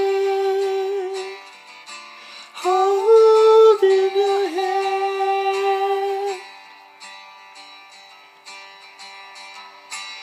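A young man singing long, held wordless notes over a plucked-guitar accompaniment. The voice breaks off about a second in, comes back a little higher, then stops about six seconds in, leaving only the soft guitar.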